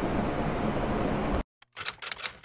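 Steady background hiss of the recording, with no speech over it, cut off abruptly about one and a half seconds in. A few short clicks follow near the end.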